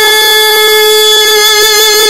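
A child's voice holding one long, steady sung note of a naat, unaccompanied.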